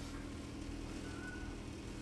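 Faint steady low hum of room tone, with a faint brief high tone about a second in.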